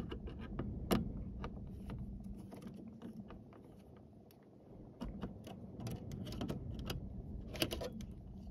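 Screwdriver working a screw out of the dome-light console's metal plate: a scatter of small irregular clicks and ticks, a sharper click about a second in and a cluster near the end, over a faint steady low hum.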